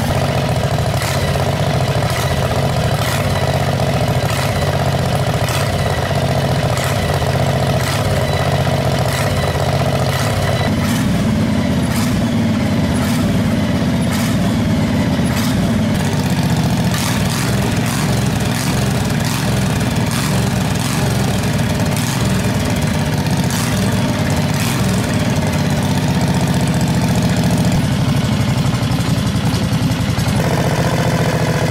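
Predator 670cc V-twin go-kart engine idling steadily, its note shifting a little about eleven seconds in.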